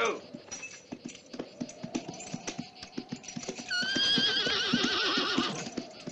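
Horse hooves clopping in an irregular walking rhythm, then, about four seconds in, a horse whinnies loudly for about a second and a half with a shaking, wavering pitch.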